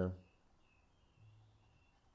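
Near silence: quiet room tone after the tail end of a spoken word at the very start.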